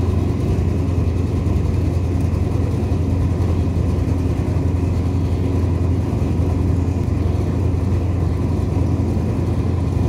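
Large steel roller machine running with a steady low drone while it squeezes water out of wet pulp, with water running and splashing off the roller.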